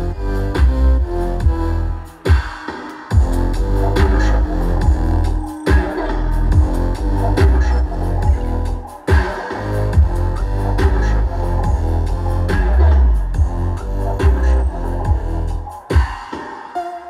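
Deep dubstep DJ set played loud through a sound system: heavy sub-bass with a pulsing beat, the bass cutting out briefly a few times.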